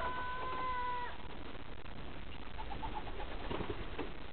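Racing pigeons in a loft making soft low calls, with a steady high-pitched tone held through about the first second.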